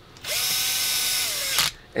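Handheld cordless drill running briefly, for about a second and a half: the motor whirs up, holds steady, then winds down.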